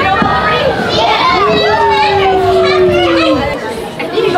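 Young children's voices, shouting and squealing at play, with one long held call from about a second and a half in that lasts nearly two seconds.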